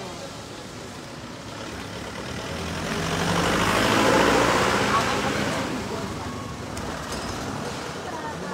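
A road vehicle passing close by: engine and tyre noise builds over a couple of seconds, is loudest about four seconds in, then fades away.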